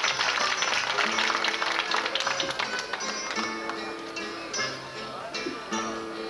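Plucked guitars playing an instrumental interlude between sung verses of improvised rhymed singing, dense and busy at first, then thinning to separate held notes.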